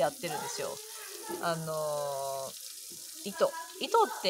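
A woman speaking, with one drawn-out, level-pitched hesitation sound held for about a second in the middle, over a faint steady hiss.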